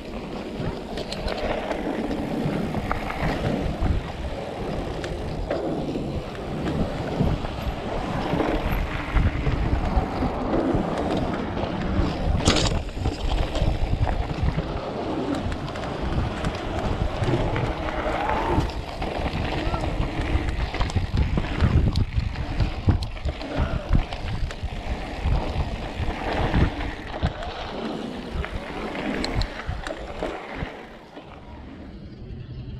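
Riding noise from a camera mounted on an electric mountain bike: wind buffeting and tyre rumble over a bumpy dirt trail and boardwalk, with frequent jolts and rattles. A sharp clack comes about twelve seconds in.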